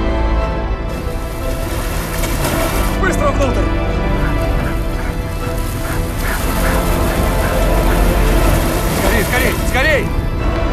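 Film soundtrack mix: held chords of the score over a deep, constant rumble, with a voice shouting or straining briefly about three seconds in, again around six to seven seconds, and near the end.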